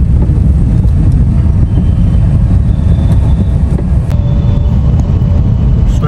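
Steady low rumble of a Tata Nano being driven, its engine and road noise heard from inside the cabin.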